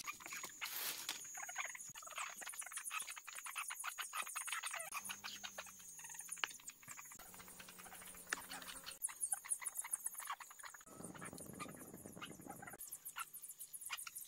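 Freshly caught small fish being handled in a plastic tub and basin, giving faint, irregular clicks, pats and splashes. A steady high-pitched drone runs behind them and stops about nine seconds in.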